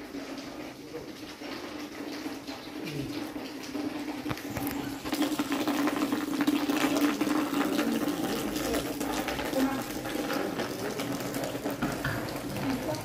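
Steady rushing of running water. It grows louder about five seconds in and holds there, with a low steady hum underneath.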